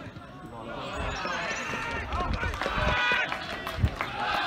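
Several men's voices shouting during goalmouth action at a football match, building and getting louder through the middle. There is one sharp thud near the end.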